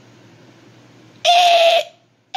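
A short, loud, high-pitched cry held on one pitch for about half a second, starting about a second in, over faint hiss.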